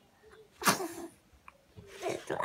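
A single sharp sneeze a little over half a second in, a sudden loud burst that dies away within about half a second.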